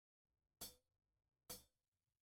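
A drummer counting in the band: two short, sharp taps a little under a second apart, with silence around them.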